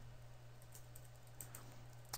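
Faint typing on a computer keyboard, a few scattered keystrokes, over a low steady hum.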